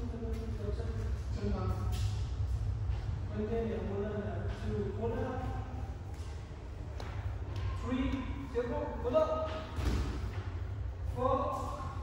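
A man's voice speaking in short phrases, over a steady low hum, with a brief knock about nine seconds in.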